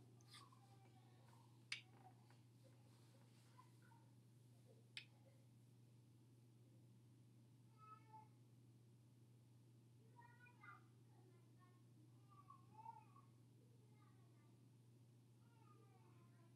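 Near silence: room tone with a low steady hum, two faint clicks in the first five seconds, and a few faint, short, meow-like animal calls in the second half.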